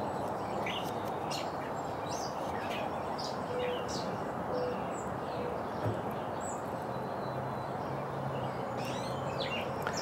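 Small birds chirping now and then over a steady outdoor background hiss.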